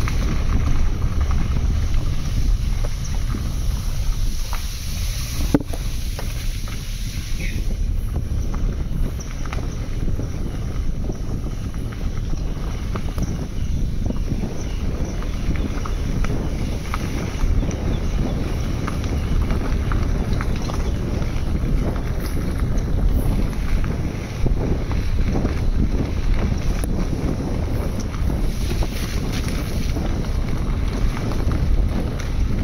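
Steady low rumble of a car driving along a rough dirt road, heard from inside the cabin: tyre, road and engine noise with an occasional small knock.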